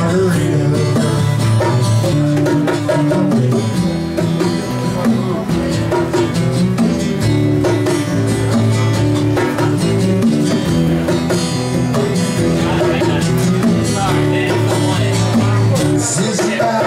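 Live band music: acoustic guitars strummed steadily in a country-style instrumental passage between sung verses.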